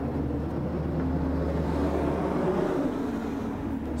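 A steady low mechanical hum with a few held low pitches, even throughout.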